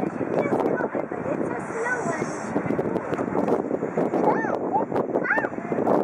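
Indistinct voices talking, with rising-and-falling voice-like calls about four and five seconds in.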